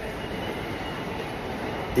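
Steady noise of a train running, an even wash of sound with no distinct events.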